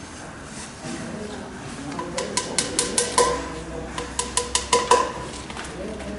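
Two quick runs of hammer taps, six or seven strikes each at about five a second, each strike with a short ringing tone: spawn plugs being tapped into holes drilled in a hardwood log to inoculate it with shiitake mycelium.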